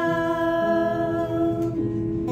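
Closing held note of a song sung by two women with acoustic guitar accompaniment; the voices stop near the end while the guitar rings on.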